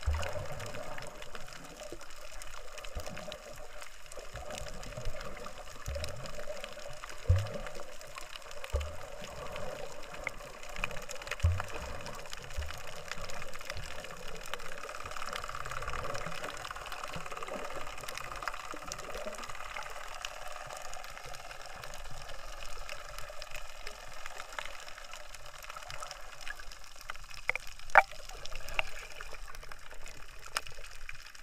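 Muffled underwater sound picked up by a camera submerged in seawater: a steady watery hiss with low thumps now and then, mostly in the first half, and a sharp click near the end.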